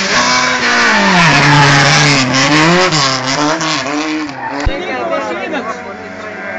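Race hatchback's engine running hard as the car passes close by on a hill-climb course, the engine note dropping in pitch about a second in and then rising and falling with throttle, over loud road and exhaust noise. The sound fades after about four seconds.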